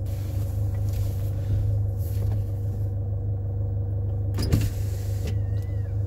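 Truck engine idling steadily, heard from inside the cab, with a single short clunk about four and a half seconds in.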